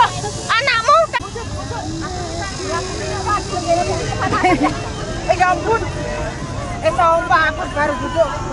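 A group of people talking over one another in the open, in scattered, overlapping snatches of speech over a steady low background rumble.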